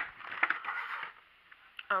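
A clear plastic Funko Pop packaging tray crinkling and clicking as it is handled, with a few sharp clicks about half a second in. The rustle dies away after about a second.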